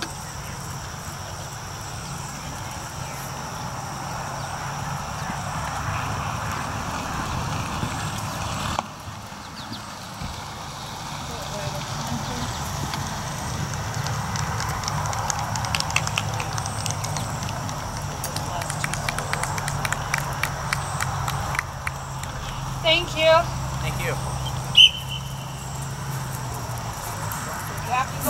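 Horse's hoofbeats on the soft sand footing of a dressage arena, clearest as irregular ticks in the later part, over a low steady hum and distant voices.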